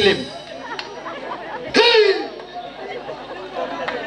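Speech only: a man's voice calls out loudly at the start and again about two seconds in, with a low murmur of crowd chatter between.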